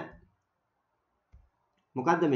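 A single soft mouse click about a second and a half in, as the keyboard input language is switched, between a man's words; otherwise a quiet room.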